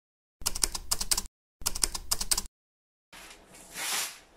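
Typewriter keystroke sound effect: two quick runs of clacking, about a second each, with dead silence around them. About three seconds in, room sound returns with newspaper rustling that grows louder near the end.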